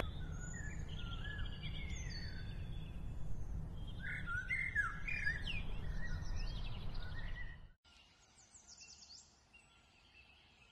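Birds chirping and calling, many short rising and falling chirps over a steady low outdoor rumble. The rumble cuts off suddenly near the end, leaving a few faint chirps.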